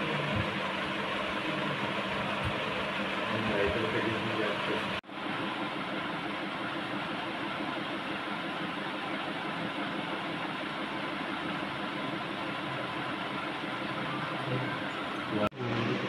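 Steady background noise with faint, indistinct voices in it; the sound breaks off briefly about five seconds in and again near the end.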